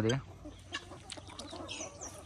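A flock of free-range desi chickens clucking faintly as they forage, with scattered soft clicks.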